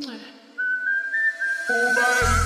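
DJ remix dance music at a break between tracks: after a short downward sweep, a single high whistle-like melody plays on its own with no beat or bass, and lower notes begin to join it near the end.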